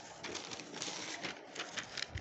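Sheets of an exam paper rustling and crackling as a page is lifted and turned over by hand.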